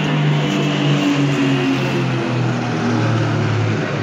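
A formation of small single-engine propeller planes flying over, their engines droning together, the pitch dropping steadily as they pass.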